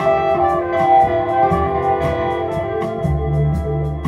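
Live jazz band playing, a trumpet line over keyboard, guitar and drums with steady cymbal strokes; the bass comes back in strongly about three seconds in.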